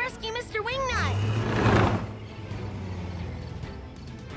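Cartoon bulldozer sound effect: a noisy whoosh swells about a second in over a low engine rumble as the bulldozer drives off, the rumble fading near the end.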